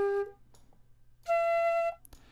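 Sampled flute notes played back in a software sampler: a held note ends about a third of a second in, and about a second later a higher note sounds for just over half a second and stops sharply. Each note lasts only as long as the fairly short flute sample, and the higher one plays the sample back faster, so it is shorter.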